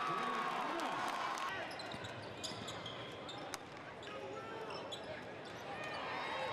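Gym sound of a basketball game: crowd voices with shouting in the first second, a basketball bouncing on the hardwood, and short high squeaks of shoes on the court near the middle.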